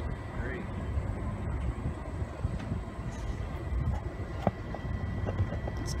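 Steady low outdoor background rumble with no distinct events, and a faint click about four and a half seconds in.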